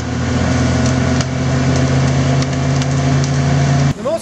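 Caterpillar 330D hydraulic excavator's diesel engine running steadily and loud while its grapple works a whole tree with its root wad, with scattered sharp cracks of breaking wood.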